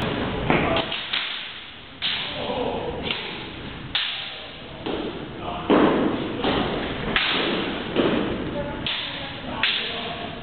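Longsword sparring: blades knocking together and feet stamping on a hard floor. It comes as a string of about a dozen sharp knocks at irregular intervals, roughly one a second, each with a short echo of a large hall.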